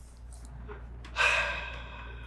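A person's audible breath about a second in, a sudden breathy sigh that fades away slowly.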